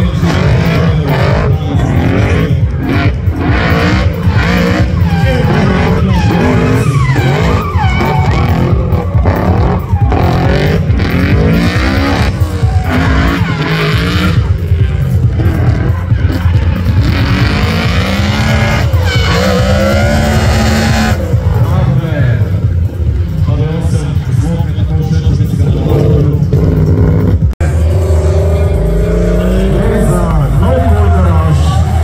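Drift cars' engines revving hard, the pitch rising and falling over and over, while the tyres squeal through long sideways slides. A brief dropout near the end, then another drift car's engine.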